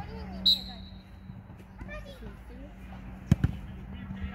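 A football kicked on an artificial pitch: two sharp thuds close together near the end, the loudest sounds here, over children's voices calling from around the pitch. A short high ringing tone sounds about half a second in.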